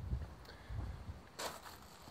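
Quiet outdoor background with a faint low rumble and one brief rustle about one and a half seconds in, as a handheld camera is moved around a parked motorcycle.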